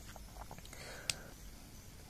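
Faint hiss of a hot air rework station blowing on a phone board's metal shield can, heating its solder to lift the can off, with a few light clicks of tweezers against the can.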